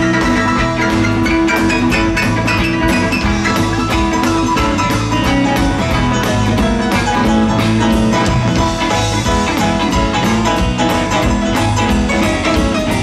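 Live rock band playing an instrumental passage with no vocals: electric guitars, bass, drum kit and keyboards over a steady drum beat.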